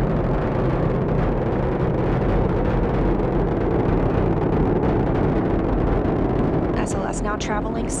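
Steady low rumble of the Space Launch System rocket climbing after liftoff, heard from the ground: two solid rocket boosters and four RS-25 core-stage engines firing together.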